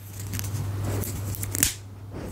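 Chopsticks working a fried egg on a plate close to the microphone: scraping and crackling handling noise with scattered clicks and one sharp click about one and a half seconds in, over a low steady hum.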